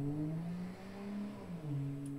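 A car engine revving. Its pitch climbs over about a second, holds briefly, then drops back and settles.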